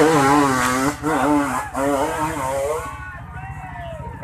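People shouting over a trail bike engine that keeps up a low, steady pulsing. The shouting dies away about three seconds in.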